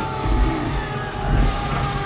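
Film soundtrack: deep rumbling booms about once a second under the steady, sustained tones of an orchestral score.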